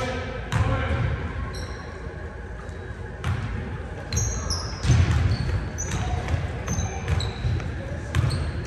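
Basketball being dribbled on a hardwood gym floor, repeated thuds with short high squeaks of sneakers on the court and players' indistinct voices.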